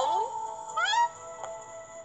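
Background music from an animated Bible story with held tones. Over it come two short pitched calls sliding upward, one right at the start and a second just under a second in.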